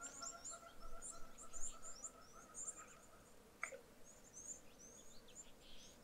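Faint birdsong: many short, high chirps and twitters, with one lower call that slides down in pitch about three and a half seconds in.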